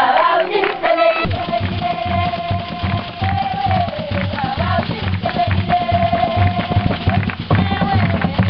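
Group singing with a steady drumbeat that comes in about a second in.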